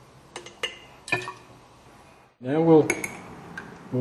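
A few light clinks and knocks of a hydrometer test jar and its plastic base being handled. A short voice sound comes about two and a half seconds in.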